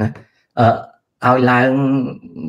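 Only speech: a man talking, with short syllables and then a long drawn-out vowel held at a steady pitch for most of a second near the end.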